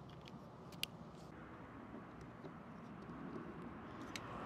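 Faint handling of solar-panel cables and connectors, with one sharp click a little under a second in and a few softer clicks over a low steady background.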